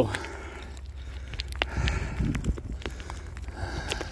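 A hand scraping and brushing loose dry dirt and small rocks, with scattered small clicks of pebbles, over a low steady rumble on the microphone.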